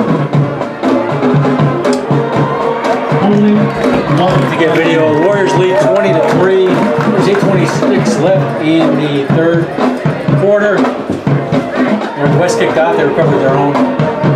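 A band playing, with drum and percussion hits throughout, over the voices of the crowd.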